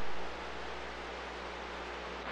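Steady hiss of CB radio static with a low hum, heard through the receiver while the channel is open and no one is talking. A brief louder burst at the very start fades quickly into the even hiss.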